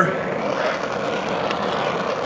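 DHC2000 oxy-acetylene torch flame, run at low pressure (4 psi oxygen, 4 psi acetylene) through a #2 tip, hissing steadily while it preheats a cast iron intake manifold for welding.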